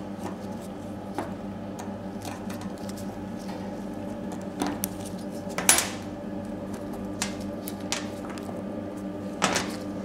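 Small clicks and scrapes of a hex key turning out small screws from a plastic electrode holder, with gloved hands handling the small parts, over a steady electrical hum. A louder brief scrape comes about halfway through and another near the end.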